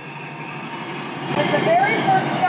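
City street noise: a steady hiss and rumble of traffic, with people's voices starting up about halfway through.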